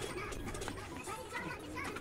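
Shop ambience with indistinct voices in short, broken snatches over a low, steady background hum.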